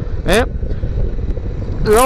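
BMW R1200R boxer-twin motorcycle on the move: a steady low engine and wind noise on the microphone, with no distinct pitch changes. A man's short "eh?" is heard at the start.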